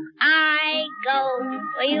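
Music: a high voice sings a bending melody over a low bass line, coming in about a quarter second in after a brief gap.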